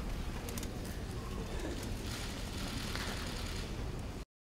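Room tone of a large auditorium: a steady low rumble and hiss with a few faint small clicks.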